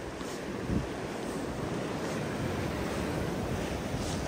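Blizzard wind blowing steadily, with gusts buffeting the microphone in a low rumble.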